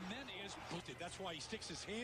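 Faint speech: a voice low in the mix, well below the narration.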